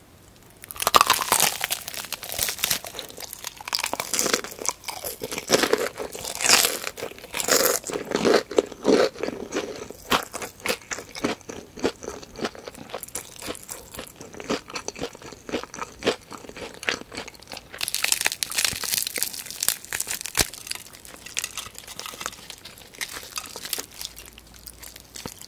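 Close-miked chewing of crispy fried chicken, the battered crust crunching densely from about a second in, softer through the middle and crunching harder again near the end.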